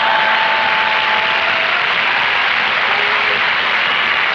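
Studio audience laughter running into steady applause, a dense even wash of noise.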